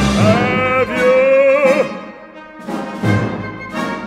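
Orchestra playing. A note with vibrato is held for about two seconds, then a run of short, sharp chords in the second half.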